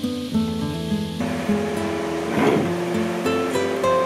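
Background music of a plucked acoustic guitar playing chords, with a brief rushing noise about halfway through.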